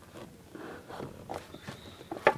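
Handling noise from a boxed iPad mini: a scatter of light clicks and taps with brief rustling as the box is turned and gripped.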